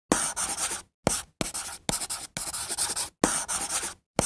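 Chalk writing on a chalkboard: six quick scratchy strokes, each starting with a sharp tap of the chalk, with short gaps between them.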